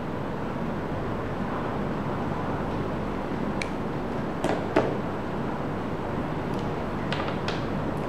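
Steady background hiss with a few light clicks and taps from handling a smartphone and its charging cable, the loudest pair about four and a half seconds in.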